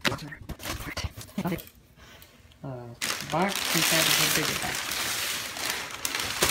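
Cardboard shipping box being handled and opened, with a few knocks and scrapes, then about three seconds of loud rustling and crinkling of the paper packing inside it.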